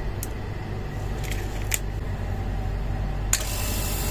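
Hermetic refrigerator compressor running with a steady low hum, switched on through a Dixell digital controller. There are a few small clicks and a sharper click a little after three seconds in, as the door micro switch for the light bulb is let go.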